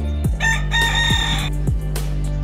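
A Thai bantam rooster crows once, starting about half a second in and lasting about a second, over background guitar music.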